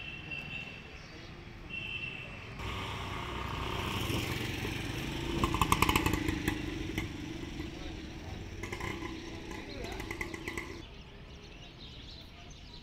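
A motorcycle passing along the street: its engine builds up, is loudest a little before the middle and fades away near the end.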